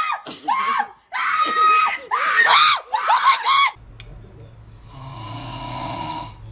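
High-pitched screaming in four short bursts, each a run of rising-and-falling shrieks. It cuts off about two-thirds of the way in and gives way to a low hum and a soft breathy noise.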